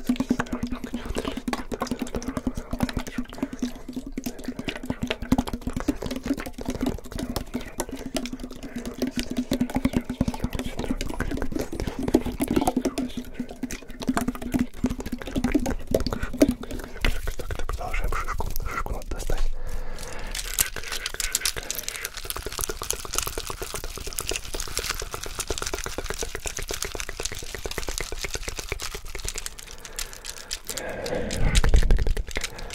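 A tin can handled close to the microphones: dense rapid scratching and tapping on the metal over a steady low hum for the first seventeen seconds or so. A hissing, rustling texture then takes over until near the end.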